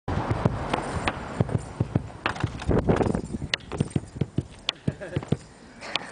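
An irregular run of sharp knocks and clicks, several a second, over a rushing noise that is stronger in the first half and fades out.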